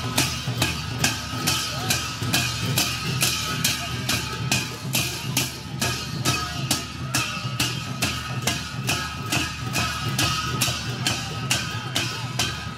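Sakela festival music: a Kirat dhol barrel drum beaten with jhyamta hand cymbals in a steady, even beat of about three strokes a second.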